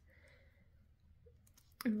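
Quiet room tone with a few soft clicks about one and a half seconds in, then a woman's voice starts just before the end.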